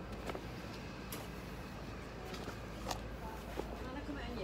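Quiet town-street background: a steady low rumble with a few faint, short clicks scattered through it.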